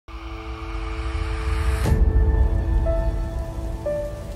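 Channel logo intro music: held tones over a deep bass rumble, with a sudden swell and hit about halfway through.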